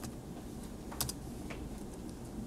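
Computer keyboard being typed on: a few sparse single keystrokes over a low room hum, the clearest about a second in, as a typo in the typed command is deleted and retyped.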